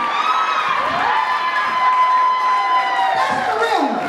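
A woman's voice holds one long high note, then slides down in pitch near the end, over a crowd cheering.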